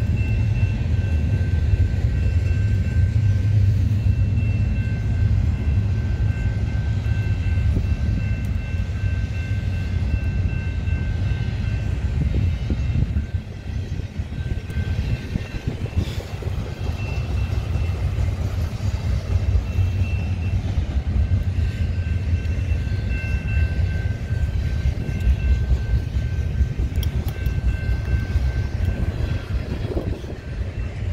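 Double-stack intermodal freight train's container well cars rolling past: a steady rumble of wheels on rail, with a thin high-pitched ringing tone over it that drops out briefly about two-thirds of the way through, then returns.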